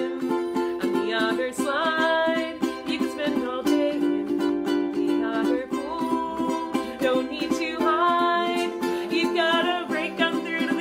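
A ukulele strummed in a steady rhythm, with a woman singing along.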